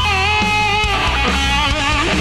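Heavy metal electric guitar solo, played live over the band, with long held lead notes that waver slightly.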